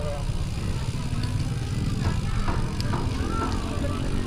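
Low wind rumble on a bike-mounted action camera's microphone while riding slowly, with people talking in the background.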